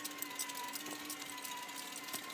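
A steady machine hum holding a few fixed pitches, with a crackle of small clicks over it.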